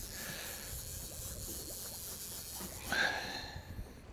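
Steady rushing hiss of wind and water around an open fishing boat, with a brief breathy sound about three seconds in.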